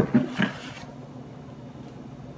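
A short knock, a couple of brief voice sounds, then quiet room tone with a faint steady hum.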